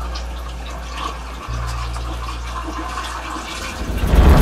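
Running water, like a tap or bath filling, over a low, steady drone in a film-trailer soundtrack; the drone dips briefly about one and a half seconds in.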